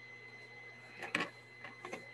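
Quiet background with a steady faint high-pitched electronic whine and low hum, broken by a few short, faint clicks about a second in and again near the end.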